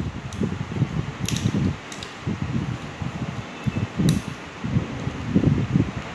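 Enamelled copper winding wire being worked by hand into the slots of a pump motor's steel stator: irregular rustling and handling noise with a few sharp clicks of wire against the metal.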